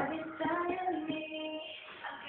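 A young girl's voice singing long held notes over music with sharp, struck accompaniment notes.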